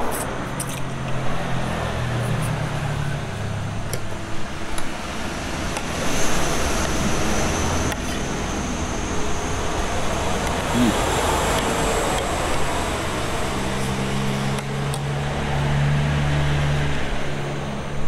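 Motor vehicle engines going by on a road, a low drone that swells near the start and again near the end.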